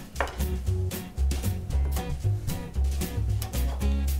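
Kitchen knife cutting through soft bread dough and knocking on a wooden cutting board several times, with background music and a steady bass line.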